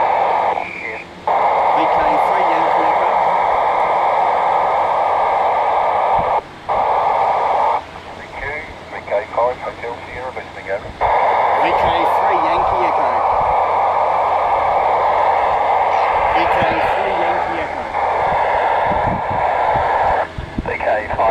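Loud, narrow-band hiss from a 2 m FM receiver tuned to an amateur satellite's downlink. It is cut by brief drop-outs about a second in and near the middle, and by a longer dip in which faint, broken fragments of voices come through.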